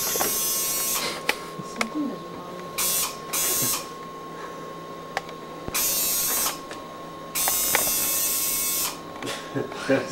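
Small camcorder zoom motor whirring in several short bursts that start and stop abruptly, the longest near the end, over a steady faint high tone.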